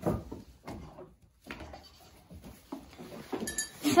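Goats bleating among a few short knocks and clatters as the herd jostles at a water bucket.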